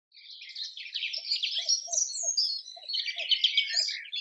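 Birds chirping and twittering, a dense run of quick high calls and trills, with a faint low note repeating about twice a second through the middle.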